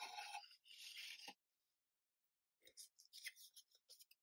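Faint rubbing and scraping of thin plywood sliding against the wooden sides of a miniature piano cabinet as a part is test-fitted; the fit rubs slightly. After a short pause come a few light wooden clicks and taps as the small pieces are handled and set down.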